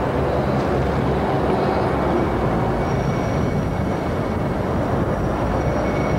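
Steady city street traffic noise: a continuous low rumble with no breaks, and a faint thin high whine through the middle.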